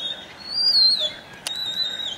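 An animal's high, thin whistling call in two notes: the first rises and falls, the second is held steady near the end, with a faint click between them.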